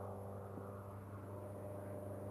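A faint, steady low hum that holds one even pitch with several overtones and does not change.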